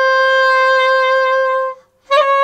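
Alto saxophone playing one note opened with a quick pralltriller, a fast flick up one step and back, then held steady for about a second and a half before stopping. The ornament is fingered with the small 'petit' key below B held down from the start.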